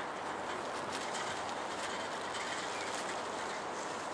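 Steady, even running noise from a Helsinki articulated tram standing at the stop, with a few faint clicks.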